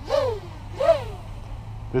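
Brushless motors of a 6-inch racing quadcopter (KDE 2315 2050kv) revving up and back down in two quick throttle bursts, the whine rising then falling each time, over a steady low hum. The pilot finds the propellers slow to spin down and wonders whether the heavy motors and 6-inch props are the cause.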